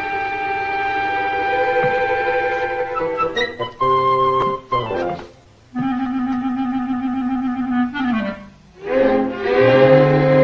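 Orchestral film score with woodwinds to the fore: held chords, then a run of short separate notes, broken by two brief pauses, with a low held bass note coming in near the end.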